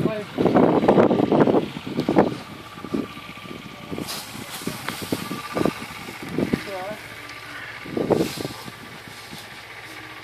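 Dry straw rustling and crackling as it is lifted and spread with a pitchfork. It comes in loud bursts in the first second and a half and again about eight seconds in, with short softer scrapes and rustles between.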